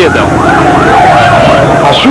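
Fire engine siren sounding in repeated rising-and-falling sweeps, with a longer wavering tone in the middle.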